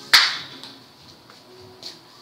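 A single sharp crack, like a clap or a hard knock, just after the start, ringing briefly and dying away within half a second, then a few faint clicks.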